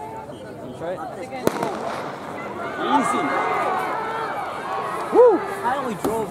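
A single sharp crack of a starter's pistol about a second and a half in, over the talk of a crowd of athletes and spectators. The voices swell after the shot, and one voice calls out loudly near the end.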